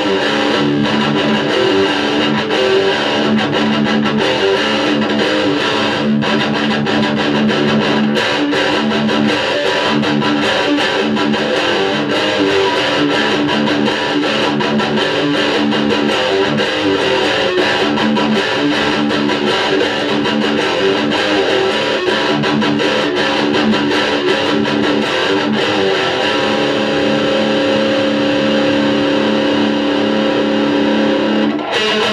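Electric guitar playing heavy rock and metal riffs without a pause, with a chord held ringing near the end.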